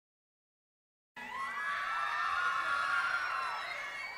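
A crowd of fans cheering and shouting, many high voices at once, starting suddenly about a second in after silence.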